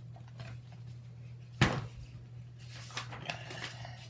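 A picture book being handled and its page turned, with one sharp knock about one and a half seconds in, over a steady low hum.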